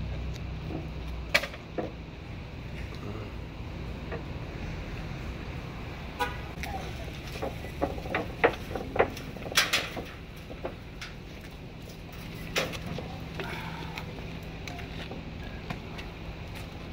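Knocks and rattles of a motorcycle being rolled off a wooden trailer down its metal mesh ramp, with a cluster of sharp knocks about eight to ten seconds in.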